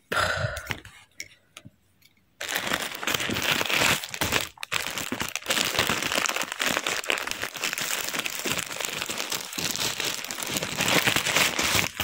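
A black plastic shipping mailer being torn open and pulled apart, its plastic crinkling. The crinkling starts about two and a half seconds in and goes on as dense crackling, with a short break after about two more seconds.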